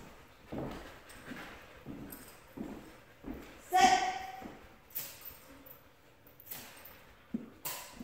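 Footsteps and a dog's claws tapping on a hardwood floor as a person and a leashed dog move across a large room: a scatter of short sharp knocks and taps.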